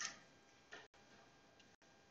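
Near silence: faint room tone, with a short faint sound at the start. The audio feed drops out briefly about once a second, giving a regular ticking, a sign of the live stream's faulty sound.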